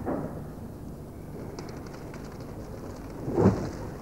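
Steady low rumbling noise from an open fire under a crucible, with one louder, rough burst about three and a half seconds in as the contents are poured into the mould.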